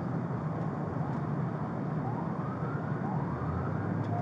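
Emergency vehicle sirens wailing faintly in a few rising sweeps, heard from inside a car cabin over a steady low engine hum.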